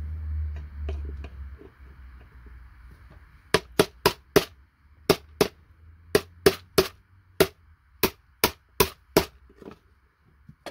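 A hammer strikes a steel chisel held on a circuit board, chopping through the gaps in the board to free its chips. About fourteen sharp strikes come in quick, uneven groups, starting a few seconds in.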